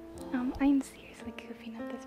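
A woman's short, loud vocal exclamation about half a second in, over background piano music that plays throughout.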